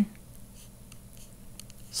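Faint light taps and scratches of a stylus writing numbers on a tablet screen, a few short ticks scattered throughout.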